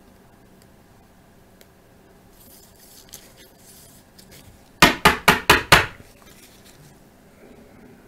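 Rigid plastic card top loader tapped against the desk five times in quick succession to seat the card, giving sharp hard clicks that last about a second, after faint rustling as the card is handled.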